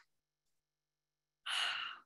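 Near silence for over a second, then a woman's audible breath, lasting about half a second, just before she speaks.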